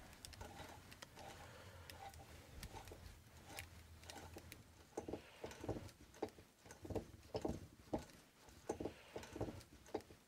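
Insulated copper wire being wound by hand onto a 35mm plastic film can, pulled off a spool on a wooden stand: faint rubbing with scattered small clicks, turning about halfway in into a regular rhythm of short rubbing strokes, two or three a second, as the can is turned.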